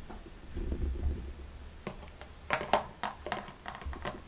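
Soft low thumps, then a run of light clicks and taps from about two seconds in: handling noise as a plastic frisbee is passed to a dog.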